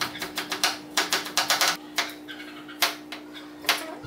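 Kitchen knife chopping red onion on a plastic cutting board: quick, irregular taps of the blade hitting the board, bunched together over the first two seconds, then a few single taps.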